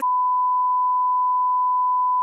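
A steady, single-pitch censor bleep added in editing that cuts in sharply over speech to cover a spoken name.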